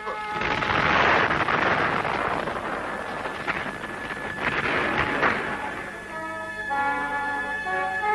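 A cartoon explosion sound effect: a long blast of noise that swells about a second in and dies away, with a second surge around five seconds. Then music with long held notes takes over near the end.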